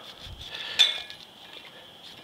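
Kitchen knife cutting kernels off an ear of fresh corn over a stainless steel bowl, with one sharp metallic clink of the blade against the bowl a little under a second in.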